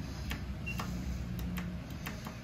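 Low steady hum inside an Otis hydraulic elevator cab, with several light clicks as a car call button is pressed and lights up.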